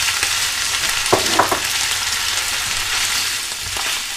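Pork strips and sliced marinated champignons sizzling in oil in a hot frying pan, stirred with a spatula, with a couple of brief sharper sounds about a second in.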